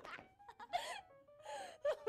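A girl's breathy, gasping laughter in two bursts over light background music, with a short falling vocal sound near the end.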